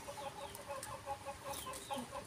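Faint clucking of chickens: a quick run of short, repeated notes.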